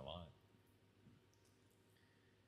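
The end of a man's word, then near silence: room tone, with a faint click about a second in.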